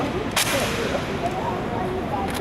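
A single sharp slap about half a second in, as honor guards' hands strike their rifles during a spinning and catching rifle drill, over the murmur of onlookers.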